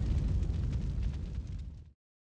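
The tail of a cinematic boom sound effect in a logo intro: a low rumble that dies away and fades out shortly before the end.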